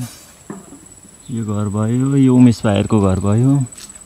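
A man talking for about two seconds from just over a second in, over a steady, high-pitched drone of insects.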